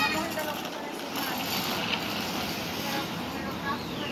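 Street ambience: a steady hum of traffic with brief, faint voices, and a short high-pitched call right at the start.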